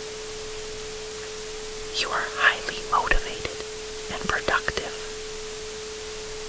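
A steady 432 Hz tone held over a constant noise hiss, with two short, soft spoken affirmation phrases about two seconds and four seconds in.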